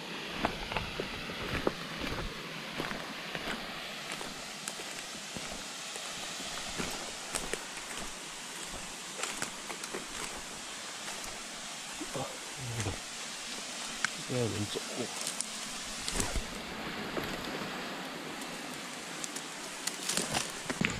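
Footsteps crunching through dry bamboo leaves and twigs, with frequent irregular snaps and rustles, over a steady rush of flowing water from a stream and waterfall.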